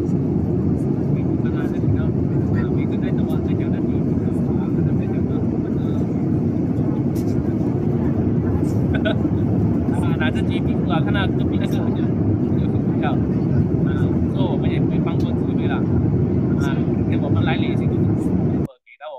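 Airliner cabin noise: a steady low roar of engines and rushing air, with passengers' voices talking faintly over it.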